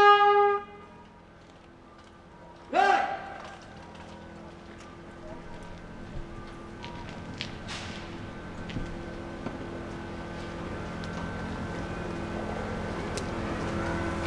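A trumpet fanfare's last held note ends within the first second. About three seconds in comes one short shouted call, likely a parade command. After that there is steady street noise with a low hum that slowly grows louder.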